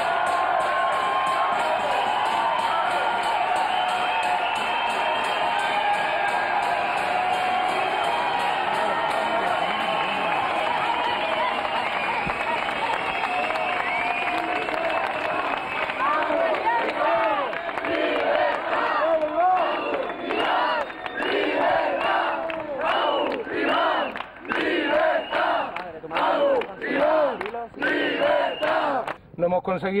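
A large crowd of protesters shouting and cheering together, a dense wall of voices that turns about halfway through into loud shouts in a steady rhythm.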